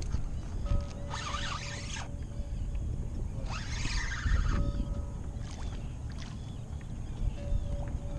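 Wind and water rumbling against a fishing kayak on open sea, with two short hissing bursts about a second and three and a half seconds in.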